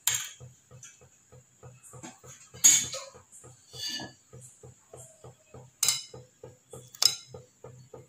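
Kitchen utensils clinking: four sharp clinks spread through, over a faint, fast, regular pulsing.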